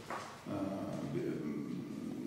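A man's long, drawn-out hesitation sound, 'uh', starting about half a second in. It is a filled pause as he hunts for a word in the middle of a sentence.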